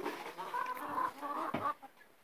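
Domestic chickens clucking, a run of short calls that cuts off suddenly near the end.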